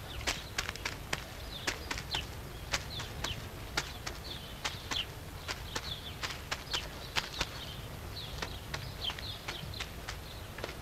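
Irregular sharp clicks and knocks, about two or three a second, with short high bird chirps in between.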